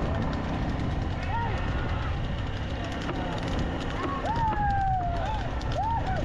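Men shouting short calls over a steady low rumble of moving vehicles on a dirt track, with one long drawn-out call about four seconds in and several quick calls near the end.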